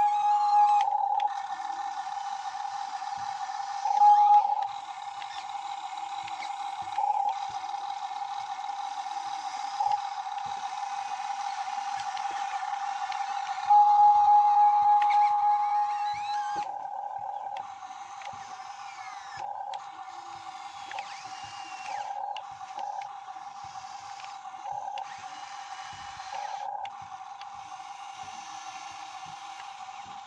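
Hitachi 135US RC model excavator's electric motors whining steadily as it tracks along the barge deck and moves its arm, cutting out briefly several times as the controls are released. The whine grows louder for a few seconds near the start, again about four seconds in, and about halfway through.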